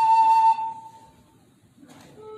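Instrumental music: a flute-like melody note held and then released about half a second in. A pause follows, with a short soft breathy noise near the end.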